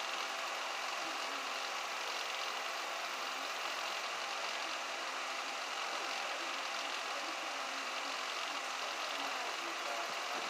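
A steady, unchanging hiss with a faint hum underneath: continuous background noise in the room.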